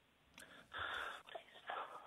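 A faint, whispery voice of a second person speaking quietly in the background of a telephone call, heard down the phone line.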